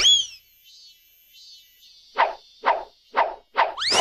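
Cartoon sound effects: a short falling whistle-like glide at the start, then five quick, short sounds about half a second apart, ending in a rising whistle-like glide.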